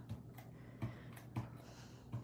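A handful of faint, irregular taps and clicks as small die-cut paper leaves are handled and dabbed with liquid glue from a fine-tip bottle on a craft mat.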